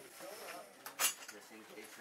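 A single sharp metallic clink about a second in, from the metal fittings of a hospital stretcher being handled, with faint voices around it.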